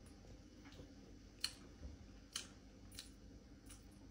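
Near silence with about half a dozen faint, sharp clicks, the most distinct about a second and a half in, as a man drinks from a plastic soda bottle, swallowing, and puts the bottle down.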